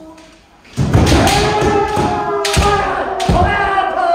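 Kendo kiai: long held shouts starting about a second in, with three sharp thuds of shinai strikes and stamping feet on the wooden dojo floor.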